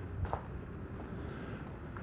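Footsteps on bare dry dirt, a few soft steps over a low outdoor rumble.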